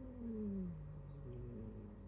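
A cat's low, drawn-out threatening yowl aimed at another cat: one long call that rises briefly, then slowly sinks in pitch over nearly two seconds.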